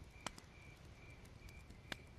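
Faint night ambience of crickets chirping steadily, a little over two chirps a second, over a low rumble. Two sharp crackles from a fire stand out, one about a quarter second in and one near the end.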